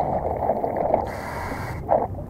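Scuba diver breathing through a regulator: a low rush of air, then the hiss of an inhaled breath for most of the second half.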